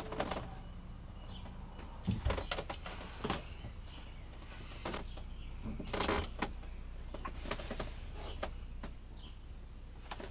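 Quiet handling of a tape measure: the steel blade sliding out and scraping against the fan housing, with a few light clicks and rustles over a low steady hum.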